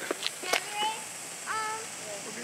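Ground fountain firework (Crackling Silver Dragon) spraying sparks with a steady hiss, and a couple of sharp crackling pops about a quarter and half a second in.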